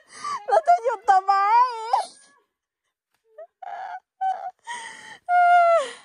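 A high-pitched voice making drawn-out wordless cries: wavering in pitch for the first two seconds, then after a pause a few short calls and one long held note that falls away near the end.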